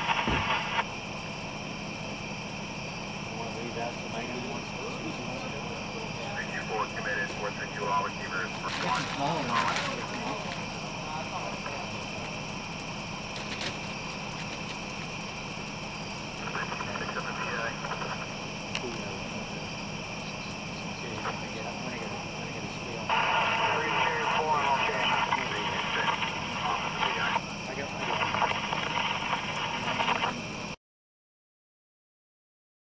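Police scanner radio: a steady hiss with short, tinny bursts of unclear radio voice traffic, the longest lasting several seconds near the end.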